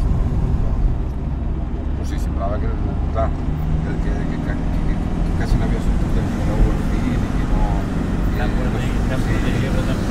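Engine and road noise of a moving car heard from inside the cabin, a steady low rumble. About three and a half seconds in, a new, higher engine hum joins it.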